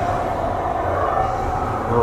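Steady rumble of the Haunted Mansion's Doom Buggy ride vehicles running along their track in the dark.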